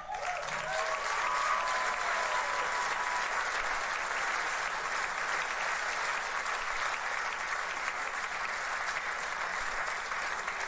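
Theatre audience applauding steadily at the end of a song, with a few voices calling out during the first three seconds.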